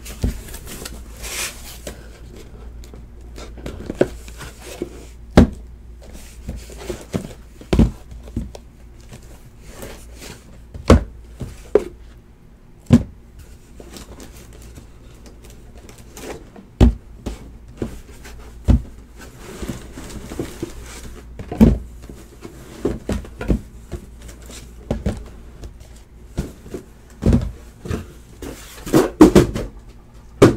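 Sealed trading-card hobby boxes being lifted out of a cardboard shipping case and set down on a table: a dozen or so irregular, sharp knocks of cardboard on the tabletop, with rustling of cardboard in between.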